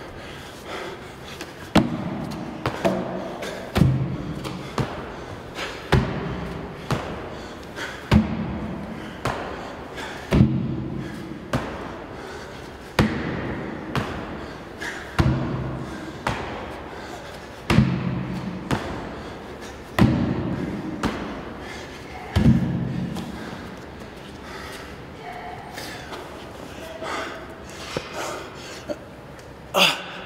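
Repeated box jumps onto a wooden plyometric box: a thud of feet landing about every two seconds, some ten in all, that stops a few seconds before the end.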